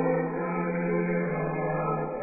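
Choral music: a choir singing slow, held notes that change pitch about once a second.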